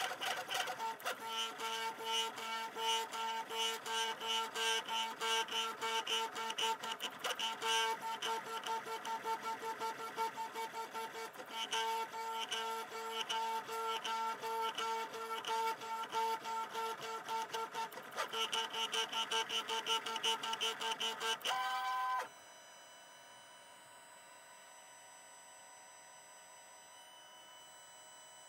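3D printer running a print, its stepper motors giving a steady whine with a fast pulsing rhythm and brief breaks as the print head traces the cylinders. The sound cuts off suddenly about 22 seconds in, leaving only a faint steady hum.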